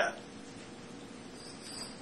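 Quiet lecture-room tone with a faint steady hum, just after a man's voice finishes a word. A faint high-pitched sound rises briefly near the end.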